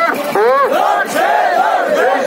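Protest slogan chanting: a man shouting a drawn-out Bengali slogan call, with crowd voices joining in.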